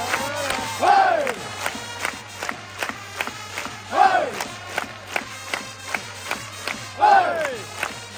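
Baseball cheering crowd chanting the intro of a player's cheer song: a steady beat about three times a second, with a loud massed "Oi!" shout that falls in pitch about every three seconds.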